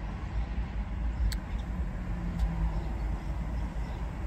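Steady low rumble of a car heard from inside its cabin, with a faint click about a second in.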